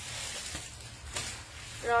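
Clear plastic garment bag crinkling and rustling as clothes are handled and pulled out of it, with a couple of small crackles. A woman says a short word near the end.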